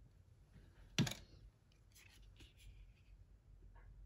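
A CD case and its plastic wrap being handled by hand: one sharp knock of the case about a second in, then faint plastic rustles and small ticks.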